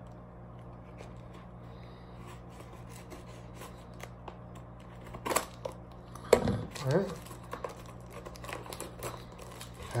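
Plastic packaging being handled and unwrapped, with soft crinkling and scattered small clicks and one sharp click a little after five seconds, over a steady low hum.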